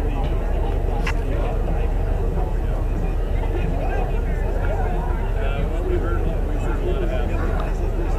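Indistinct chatter of several people talking, over a steady low rumble, with one sharp click about a second in.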